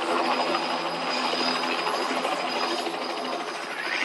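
A dense, steady rushing and crackling noise with a thin high whine over it. It takes the place of the song's music and ends with a rising sweep near the end.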